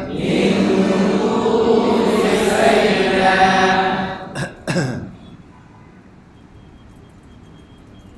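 A man's voice holding one long chanted recitation note for about four seconds, then two short harsh throat sounds, after which it goes quiet.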